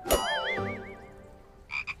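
A cartoon-style comedy sound effect: a sharp hit, then a wobbling, warbling tone that fades over about a second, with two short blips near the end.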